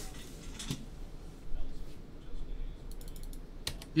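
Scattered clicks of typing on a computer keyboard, with a quick run of taps near the end.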